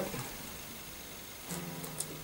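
A capo clamping onto the first fret of an acoustic guitar: faint clicks of the capo on the strings about one and a half seconds in, and a low note from the strings that keeps ringing. The rest is quiet.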